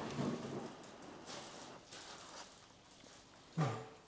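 Soft, breathy noise close to the microphone, fading over the first couple of seconds, then a short low hum near the end as a spoonful of hot leek cream sauce is tasted.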